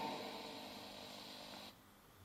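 Faint reverberation of a man's voice dying away in a large church, then near silence from about one and a half seconds in, where the background cuts off suddenly.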